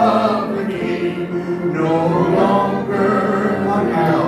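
A church congregation singing a hymn together, the voices holding long notes that move from one pitch to the next.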